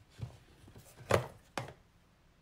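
Small ink jars knocking onto a tabletop as they are picked up and set down: three short knocks, the loudest just past a second in.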